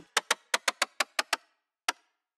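Short, dry percussion hits from a sampled cassette-deck switch click, tuned toward a woodblock sound and played in quick succession about eight times, then once more near the end. The hits sound at changing pitches as the sampler note is moved.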